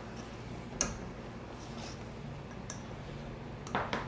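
Wire whisk stirring thick batter in a stainless steel bowl, mostly faint, with a few light ticks of the wires against the bowl. The sharpest tick comes a little under a second in.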